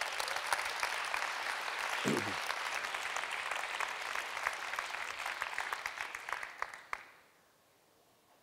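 Large audience applauding in a conference hall, a dense patter of many hands that fades out about seven seconds in.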